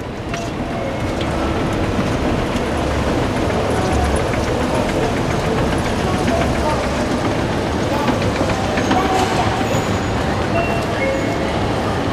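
Busy railway-station crowd noise: many overlapping voices and footsteps in a reverberant concourse, with no single sound standing out, heard while riding a station escalator.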